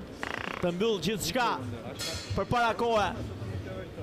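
A man talking, with a short buzz near the start and a brief hiss about two seconds in.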